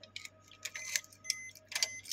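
A series of light, irregular plastic clicks and ticks from a car's door-panel switches, the mirror adjust and fold controls, being handled, with a faint brief whine near the middle.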